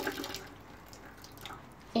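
Water running and trickling into a bucket. It is loudest at first and fades to a faint trickle about half a second in.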